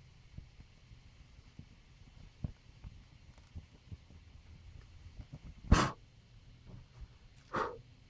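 Two short puffs of breath blowing out the flame on a burning twine-wound handle, the first the loudest, with small knocks and clicks of handling before them.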